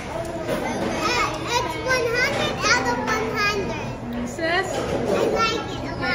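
Children's high voices talking and calling out excitedly, with rising and falling pitch, over the murmur of people at other tables.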